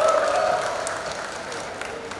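Audience applauding and cheering, with one voice holding a cheer near the start, the applause dying away steadily.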